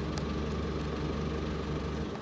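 Telehandler's diesel engine idling steadily with a low, even hum.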